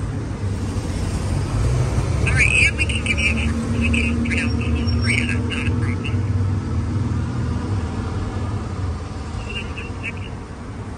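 Street ambience: a steady low rumble of road traffic, with a hum for a few seconds midway and a run of short high chirps between about two and six seconds in.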